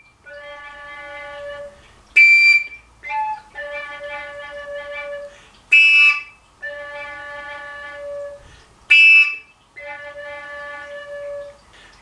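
Koncovka (Slovak overtone flute) alternating long, softer low notes with three short, much louder high notes, each lasting under a second. Pitch is switched by breath force, as an exercise in feeling how hard to blow.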